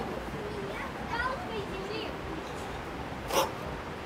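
Faint background conversation from people nearby, with one short sharp hiss-like noise about three and a half seconds in.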